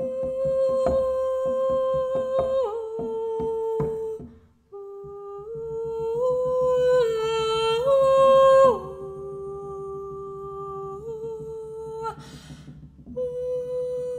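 A woman humming long wordless notes that step down and up by small intervals, over fingers knocking and tapping on a hard surface. The knocks are sharpest in the first four seconds; after a short break the notes go on over a soft, quick patter of fingertips.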